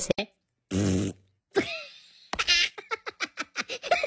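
Comic cartoon sound effects and vocal noises: a short buzzing noise about a second in, a brief sliding squeak, then a fast stuttering run of short chattering sounds.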